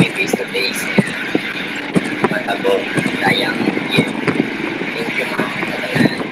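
A young man speaking in a phone-recorded video message, heard played back over a video call, with steady background noise under his voice.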